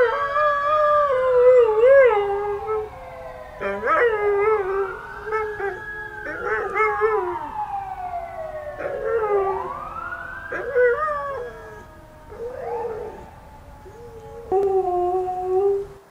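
Alaskan Malamute howling in long, wavering notes in answer to an emergency siren, which wails slowly up and down in pitch beneath the howls. The howling pauses and starts again several times, with a last loud howl near the end.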